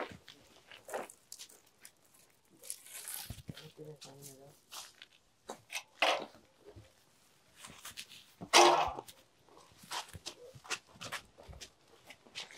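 Scattered knocks and scuffs of a wooden ladder being lifted and carried, with footsteps on concrete, and faint voices. A louder noisy burst comes about eight and a half seconds in.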